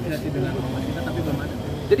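Indistinct voices talking in the background over a steady low rumble, with the start of a man's answer right at the end.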